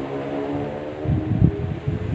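A motor vehicle passing on a nearby road: a steady engine hum whose pitch sinks slightly as it goes by, followed by low, uneven rumbling in the second half.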